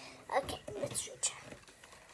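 A child whispering a few quiet words.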